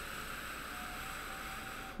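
One long, steady exhale, breath hissing out evenly, ending just as speech resumes.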